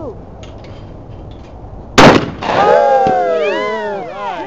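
A shotgun fires a single shot at a clay target about halfway through. Voices exclaim and laugh right after it.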